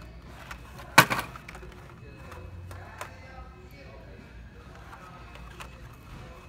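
Plastic-and-card Hot Wheels blister packs clacking against each other and the metal peg hooks as a hand flips through them: one sharp clatter about a second in, then lighter scattered ticks.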